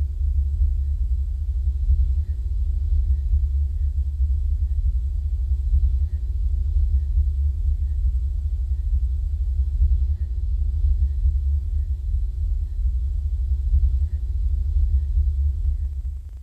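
A deep, steady low rumble, the kind of ominous drone laid under a horror-film scene as a sound effect.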